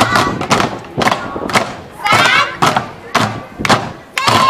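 A children's drumline beating sticks on upturned plastic bins used as drums, a heavy thud roughly twice a second, all hitting together. Voices shout briefly about halfway through.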